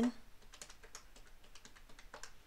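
Buttons of a plastic desktop calculator being pressed in quick succession, a run of light clicks.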